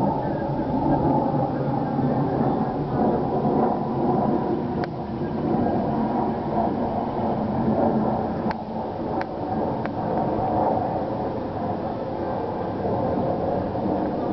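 A steady low mechanical drone, with a few faint sharp clicks about halfway through.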